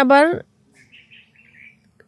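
A woman's voice finishing a phrase, then a quick series of faint bird chirps from about a second in.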